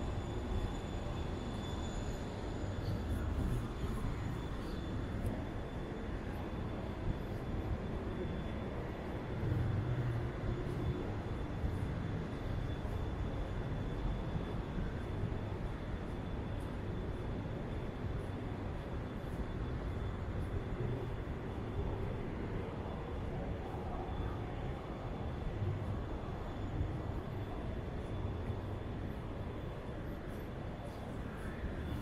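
Steady low rumble of outdoor city ambience heard while walking, with a thin high whine that fades out about halfway through.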